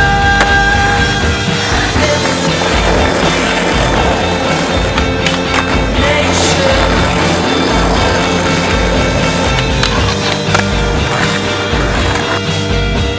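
Skateboard wheels rolling on asphalt, with sharp clacks of the board now and then, under a song.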